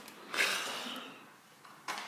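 Kitchen drawer being pushed shut on its runners: a sliding hiss that fades over about a second, then a short click near the end.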